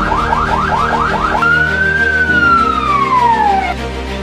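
Police siren: a fast yelp of about four to five rising sweeps a second, then one long wail that rises and falls away, over background music.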